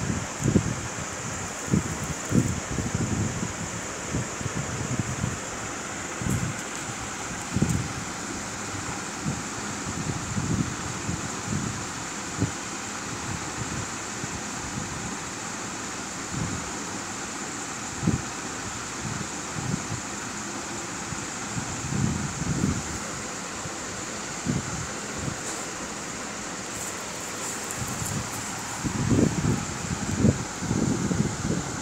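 Steady background hiss with irregular low bumps and rumbles on the microphone, the handling noise of a hand-held phone being moved about.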